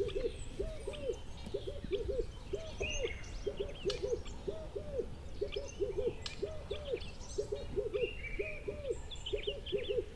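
Bird ambience: low hooting calls, short rising-and-falling notes in quick groups of two or three repeating without a break, with scattered higher chirps of small birds above them.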